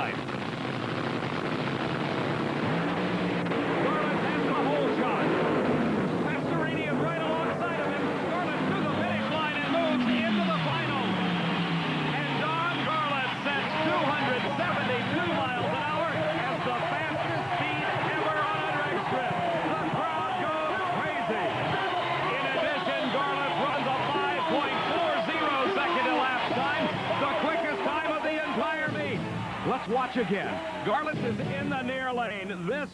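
A top-fuel dragster's supercharged, nitromethane-burning V8 at full throttle on a record quarter-mile run, the first drag run over 270 mph, at 272 mph. A large grandstand crowd cheers and shouts through it.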